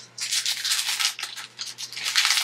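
Clear plastic packaging rustling and crinkling in irregular bursts as a metal cutting-die set is handled and worked out of it, starting a moment in.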